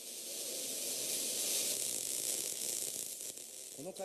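A steady, high-pitched hiss that builds a little over the first two seconds and thins out near the end.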